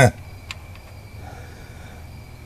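Mostly quiet, with a steady low hum and a single light click about half a second in, then a fainter tick.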